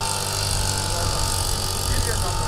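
Backpack motorized mist-blower sprayer running steadily: a small engine with a rushing air blast and a steady high whine as it blows spray over the crop.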